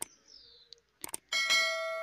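Sound effects of a subscribe-button animation. There is a click at the start, then two quick mouse clicks about a second in, followed by a bell chime that rings on with many overtones and slowly fades.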